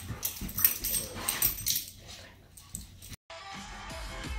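Two dogs play-fighting on a carpeted floor: scuffling with scattered light clicks and jingles. A little after three seconds in, it cuts off suddenly and upbeat funky background music begins.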